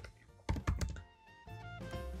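Typing on a computer keyboard: a quick run of keystrokes about half a second in, with soft background music.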